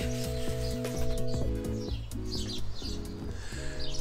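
Background music of sustained chords changing every second or so, with small birds chirping now and then.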